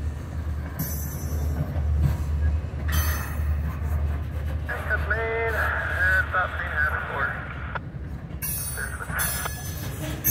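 Freight cars rolling slowly past: a steady low rumble of wheels on rail with short bursts of high hiss, and a wavering, high-pitched wheel squeal through the middle. The rumble eases off near the end.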